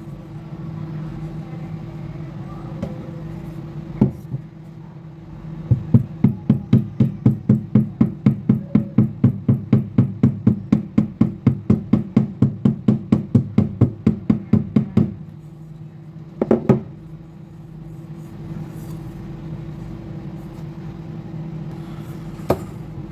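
Rapid, even tapping of the wooden end of a hammer handle on the aluminium grille of a B&O speaker cover, knocking out a dent from a drop. The taps come about four a second for about nine seconds, starting about six seconds in, with a single knock before the run and another after it.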